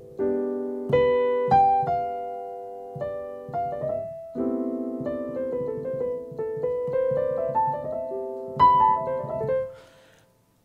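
Piano playing jazz chords with no talking: an A minor 9 voicing, then an A minor add2. The chords are struck several times with a melody moving above them, and the last one rings out and fades just before the end.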